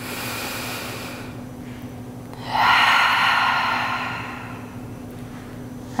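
A woman taking one deep yoga breath: an audible inhale for about a second, then a longer, louder exhale that fades away.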